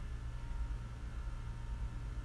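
Steady low hum with a faint background hiss: room tone, with no distinct handling sounds.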